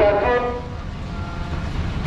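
A low, steady background rumble, with a short burst of voices right at the start and a faint thin tone near the middle.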